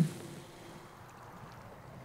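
Faint, steady wind and water noise.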